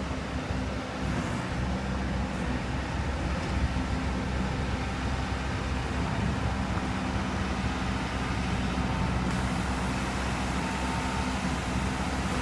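Broce RJ300 four-wheel road broom running steadily as it drives, an even engine hum under a broad rushing noise.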